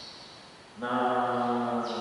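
A man's voice chanting a prayer on one held, level note for about a second, starting a little before the middle.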